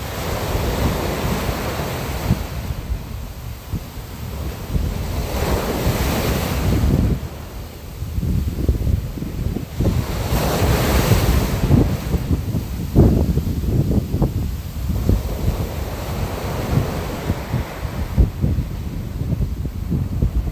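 Steady rushing noise of sea waves and wind, surging and easing in swells, with two louder washes about a quarter and about halfway through, over a constant low rumble.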